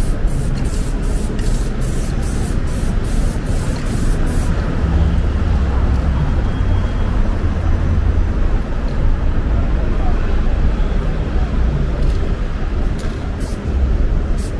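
Street traffic noise with a vehicle's low rumble swelling in the middle. In the first few seconds, short evenly spaced hisses, about three a second, stop suddenly, and a few more hisses come near the end.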